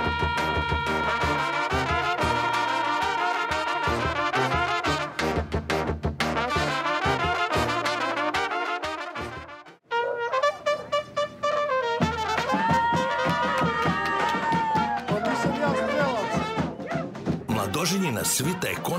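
Brass band with trumpets playing lively wedding music. About ten seconds in the music breaks off abruptly and resumes with a different passage of long held notes.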